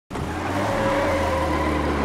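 Vintage taxi's engine running hard as the car accelerates, a steady low rumble with a higher engine tone above it.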